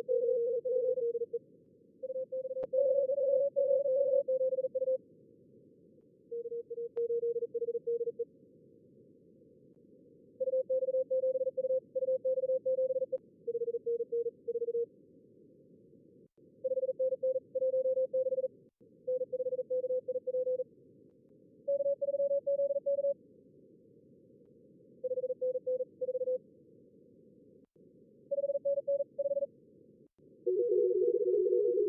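Simulated Morse code (CW) contest traffic from a contest logger's practice mode: fast keyed tones at several pitches around 400–600 Hz, coming in blocks of one to three seconds over a narrow band of receiver hiss. The operator's own sending and the callers' replies alternate between the two radios.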